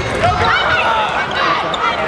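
Volleyball rally on an indoor court: sneakers squeaking on the floor in short sharp chirps, with ball hits and a crowd of voices shouting.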